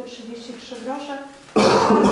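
A loud, sudden cough close to the microphone about one and a half seconds in, lasting about a second, after a stretch of quieter speech.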